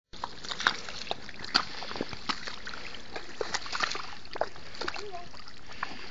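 Rubber boots wading through shallow water over mud: a run of irregular wet splashes and sloshes, one with each step.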